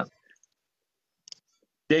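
A pause between a man's sentences: near silence, with one brief faint click about a second and a quarter in, before his voice resumes at the very end.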